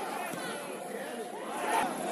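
Indistinct voices of several football players calling and shouting across the pitch, overlapping over a steady background hiss, with one louder call near the end.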